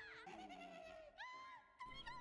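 Near silence, with faint high-pitched wavering cries from the episode's soundtrack, played very low.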